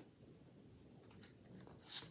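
Oracle cards being handled: mostly quiet, with a faint tick and then a short, crisp papery swish near the end as a card is slid out of the hand.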